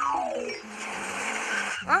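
Cartoon sound effects: a whistle-like tone falling in pitch over about a second, then about a second of hissing rush, with a short 'Huh?' from a character at the end.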